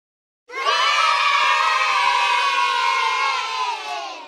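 A group of young children cheering in one long, loud shout that starts suddenly about half a second in and tails off near the end.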